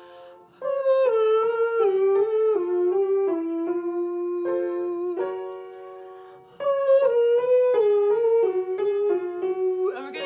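A woman's singing voice runs twice down a stepwise descending scale, each run ending on a held low note, over sustained upright-piano notes. It is a vocal range exercise for singing smoothly through the break.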